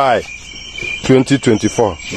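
Crickets trilling steadily at a high pitch, heard plainly in a short pause between bursts of people talking in a local language.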